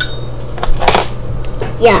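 A few light clinks of a utensil against a metal saucepan of tomato sauce, over a steady low hum.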